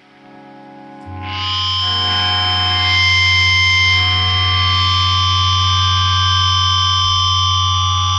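Distorted electric guitar feedback with a held low note, swelling in over the first second and a half and then holding as a steady drone: the intro to a hardcore punk song.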